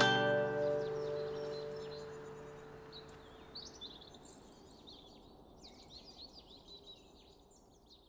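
A closing chord strummed on a nylon-string classical guitar rings out and fades away over about four seconds. Birds chirp throughout and are left alone near the end.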